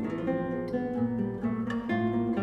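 Classical guitar played solo: a run of plucked notes moving over held bass notes.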